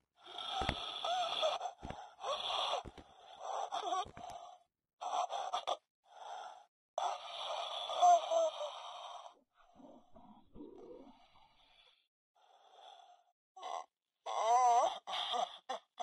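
Quiet, heavily distorted human voice in short broken sounds. Near the end it has a wavering, warbling pitch.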